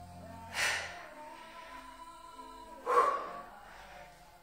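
Background music, with two short, forceful breaths about two and a half seconds apart: a person exhaling hard on each squat-to-shoulder-press rep with dumbbells.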